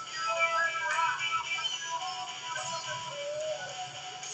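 Music with a singing voice playing quietly from a television in the room.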